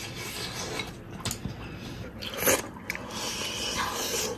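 Close-up eating sounds: chewing and gnawing on braised pig's trotters and rice, with short irregular clicks and one louder bite about halfway through.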